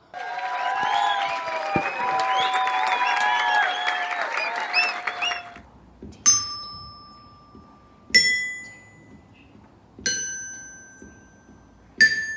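A burst of several voices calling out over each other with some clapping, then a child's glockenspiel struck with a mallet: three single notes about two seconds apart, each ringing and fading away.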